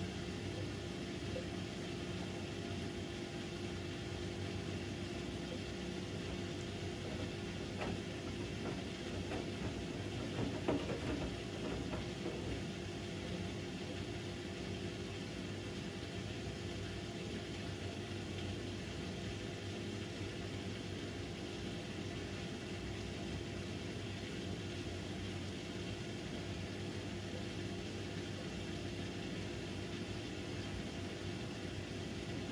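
Bosch front-loading washing machine running its wool cycle, the drum motor humming steadily as the drum turns a single wet jumper. There is one brief louder moment about ten seconds in.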